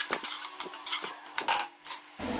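Metal spatula scraping and clinking against a metal pot while stirring mutton and masala, in short uneven strokes with a few sharper scrapes about a second and a half in.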